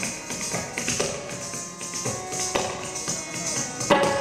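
Kathak ankle bells (ghungroo) jingling as bare feet stamp the wooden stage in rhythmic footwork, with strikes about every half second and the loudest near the end. Steady melodic instrumental accompaniment is held underneath.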